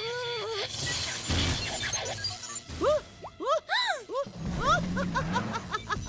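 Cartoon sound effects of a malfunctioning radio-cassette player going haywire over music. There is noisy crashing about a second in, then a string of rising-and-falling pitched sweeps and quick chirps.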